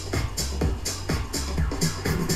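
Two house tracks, one at 125 BPM and one at 126 BPM, playing together through Pioneer DJ decks with a steady kick drum and hi-hat pulse. The beats are being nudged into line with the jog wheel and tempo fader in small adjustments: beatmatching in progress.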